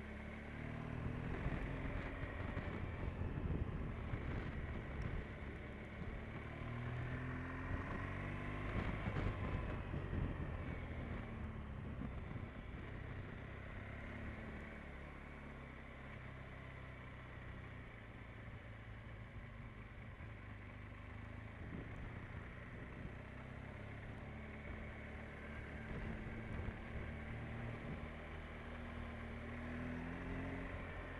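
Motorcycle engine running under way, its pitch rising and falling with the throttle, louder through the first third and again near the end, over steady wind and road noise.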